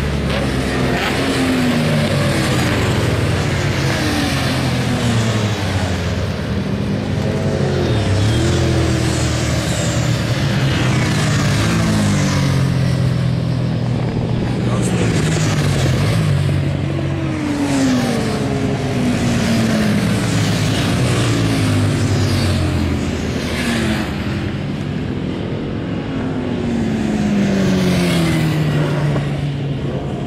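Racing motorcycles passing one after another at high revs on a circuit, each engine note dropping in pitch as it goes by, with several bikes often heard at once.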